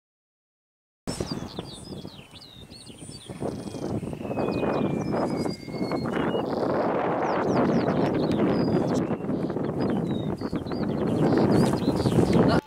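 Wind buffeting the microphone in an open field, gusting and growing louder, with small birds singing high chirping phrases above it. It starts suddenly about a second in, after silence.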